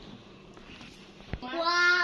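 A cartoon cat's meow played from a tablet app: one loud, rising call about half a second long near the end, just after a short knock.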